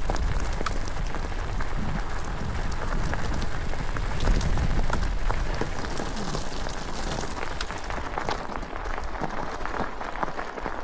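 Mountain bike tyres rolling over a loose stony track: a steady crackle of many small clicks, with wind rumbling on the microphone.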